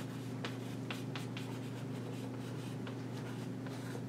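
Chalk writing on a blackboard: a run of short, sharp scratches and taps, thickest in the first second and a half and sparser after, over a steady low room hum.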